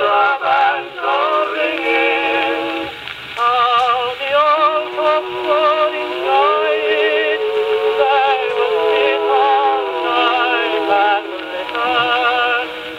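1915 Columbia Graphonola wind-up acoustic phonograph playing a 78 rpm record of a singer with a wide vibrato. The sound is thin and boxy, with no deep bass and no high treble.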